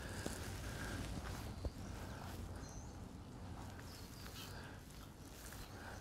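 Quiet outdoor ambience of a walk on a cobbled lane: faint footsteps on cobblestones over a low steady rumble, with a short high chirp near the middle.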